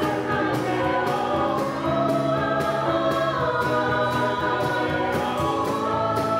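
Mixed choir singing a show tune in parts, with piano and percussion accompaniment keeping a steady beat.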